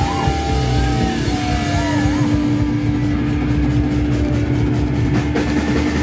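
Loud live rock band through amplifiers: distorted electric guitar and bass holding a heavy, dense drone, with one long steady ringing tone held over it for several seconds. Cymbal and drum strikes start to come in near the end.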